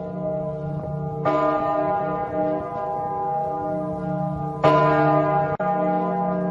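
Bell struck twice, about three and a half seconds apart, each strike ringing on and slowly fading over a steady low drone.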